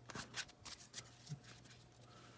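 Paper trading cards handled by hand, a few faint snaps and slides of card stock as they are flipped and laid down, going quieter after about a second and a half.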